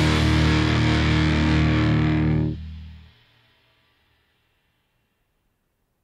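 Rock band's closing chord held on distorted electric guitar, ending the song: it stops abruptly about two and a half seconds in, a low bass note rings on about half a second longer, and the sound fades out within the next second.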